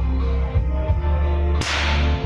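Instrumental karaoke backing music with steady bass and guitar. Near the end, a short, sharp rushing burst as a confetti cannon fires streamers over the stage.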